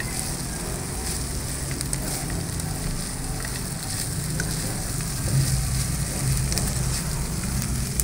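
Diced pork and onions sizzling in hot oil in a metal wok, stirred with a spatula that scrapes and taps the pan now and then.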